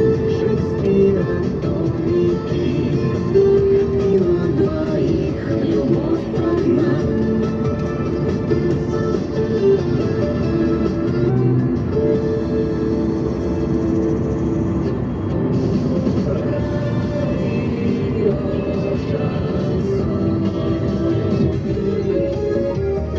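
Background music with long held tones and no vocals.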